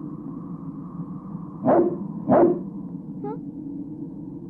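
A dog barking twice, about half a second apart, over a steady low background drone.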